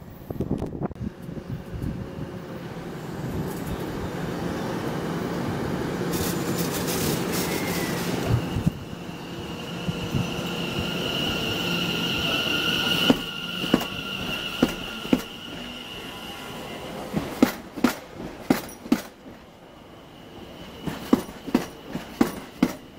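London Overground electric multiple unit running alongside the platform. A rumble builds as it approaches, then a high, steady wheel squeal comes in about halfway through, and sharp clacks follow as the wheels cross rail joints.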